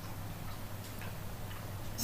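Quiet room tone in a pause between spoken phrases: a steady low hum with faint ticking.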